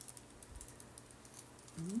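Faint, scattered light clicks and taps of small items being handled.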